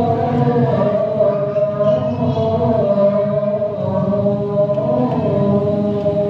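A man singing the adhan, the Islamic call to prayer, into a microphone: one long drawn-out phrase whose pitch winds slowly up and down.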